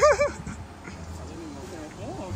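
A dog whining: a loud, wavering, high-pitched cry right at the start, then fainter whines.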